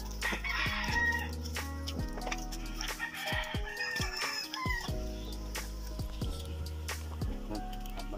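A rooster crowing twice, over background music with steady held bass notes.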